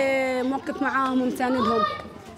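Speech only: a woman talking in Arabic.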